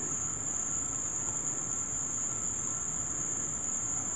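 A steady high-pitched whine over an even background hiss, unchanging throughout, with no distinct handling sounds.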